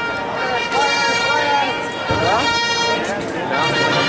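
People's voices talking, with a steady droning tone underneath and a rising call about halfway through.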